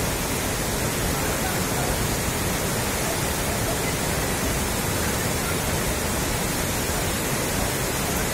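Muddy floodwater rushing across a road in a fast torrent, a steady unbroken rush of water.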